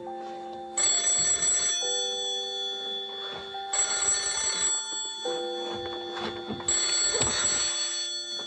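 A telephone ringing, three rings about three seconds apart, over slow held notes of background music.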